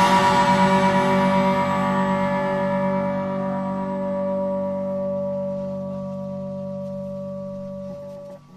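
The last chord of a hardcore punk song: an electric guitar chord left ringing and slowly dying away, with the tail of a cymbal crash fading out over the first few seconds.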